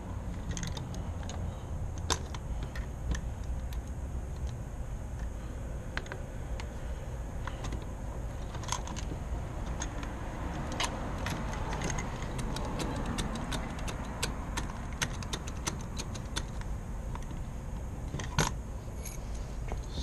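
Clicking and rattling of a realtor's combination key lockbox hanging on a door knob as it is worked by hand, in quick irregular clicks that are densest in the middle stretch. Codes are being tried that do not open it.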